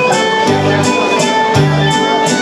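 Live folk dance tune played on fiddle, with electric guitar and keyboard accompaniment and a steady beat.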